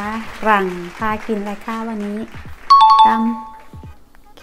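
A loud two-note ding-dong chime, the higher note then the lower, rings out about three quarters of the way in and fades within a second, like a doorbell chime sound effect.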